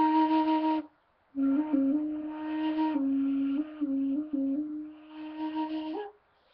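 End-blown flute played: one held note ending just under a second in, a short break for breath, then a slow run of held notes stepping up and down among a few neighbouring low pitches, softer for a moment near the end.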